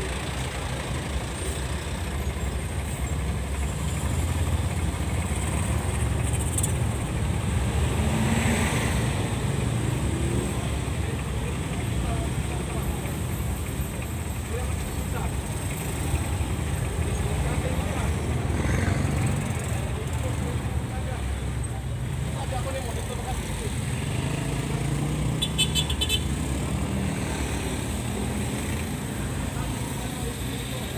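Steady low rumble of idling engines and passing street traffic heard from inside a stopped truck's cab, with a vehicle horn tooting.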